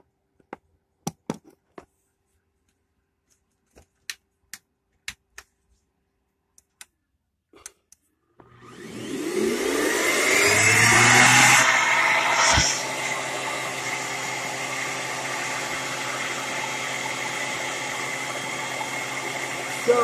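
A 12-amp corded vacuum cleaner running off a solar generator's inverter. It switches on about eight seconds in, its motor spinning up with a rising whine, then runs steadily. Before it starts there are a few scattered clicks from handling the plug and cord.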